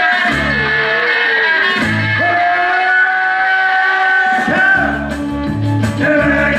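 A man singing a rock song into a stage microphone over a loud guitar-led rock backing, with a long held note in the middle.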